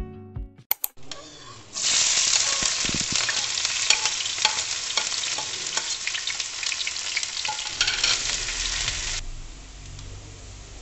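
Chopped red onion frying in hot oil in a nonstick pan: a loud, steady sizzle full of crackles and pops, starting about two seconds in after a couple of sharp clicks. Near the end it drops abruptly to a much fainter sizzle.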